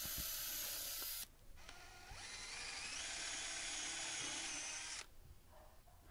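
Cordless drill boring starter holes through a pine board with a twist bit, in two steady runs. The first run stops about a second in. The second starts about two seconds in, its whine stepping up in pitch a second later, and stops about five seconds in.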